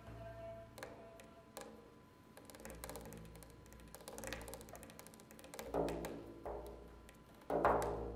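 Quiet, sparse Persian-style music: a large frame drum played with the fingers, light taps and low deep strokes, with two louder strokes near the end. A kamancheh (spike fiddle) holds a soft bowed note in the first second.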